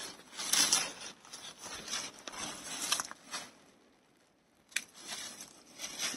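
Hand pruning shears snipping through broccoli stems, with rustling of the plant's leaves and a few sharp clicks. There is a short pause a little past the middle, then a sharp click.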